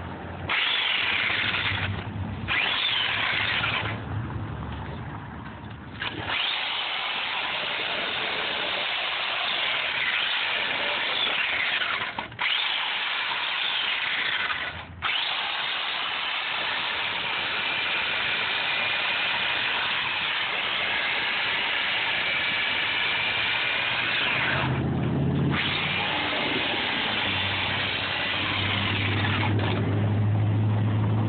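Electric chainsaw cutting into expanded polystyrene foam, its motor whine rising and falling in pitch as the chain bites and lets off. It eases off for a few seconds early on and drops out briefly several times.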